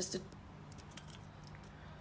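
Faint, light metallic clicks of a surgical screwdriver shaft being fed into and twisted in a screw inserter handle.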